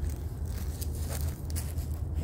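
A few soft footsteps and phone handling rustles over a steady low rumble.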